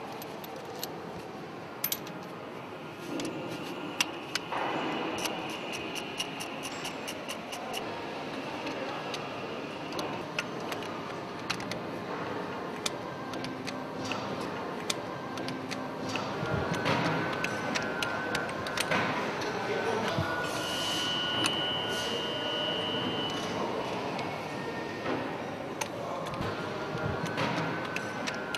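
Hand tools working on the engine's metal fittings: a ratchet wrench clicking in runs and metal parts clinking as bolts are undone, over a steady workshop hiss.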